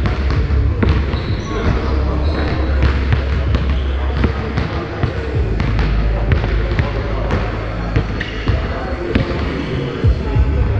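Basketball bouncing on a hardwood gym floor, making irregular sharp thuds, with people talking and a steady low hum of a large gym.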